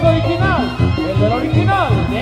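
A live Mexican brass band (banda) playing a dance tune: a steady bass beat under swooping melody lines.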